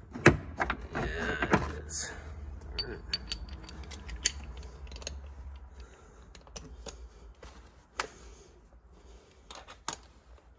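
Scattered sharp clicks and light metallic rattles of hand tools on screws and plastic interior trim, the loudest click right at the start and the rest irregular and fading.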